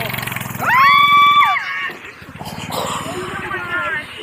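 A small gas mini bike engine running with a rapid low putter, which fades out about two seconds in. About half a second in comes a loud, high-pitched held cry lasting about a second and falling off at the end, with laughter.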